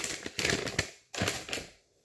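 Paper-and-plastic sterilization peel pouches rustling and crinkling as they are handled, in two stretches with a short pause about a second in.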